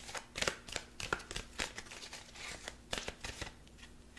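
Deck of Archangel Power Tarot cards being shuffled in the hands: a run of light, irregular card clicks.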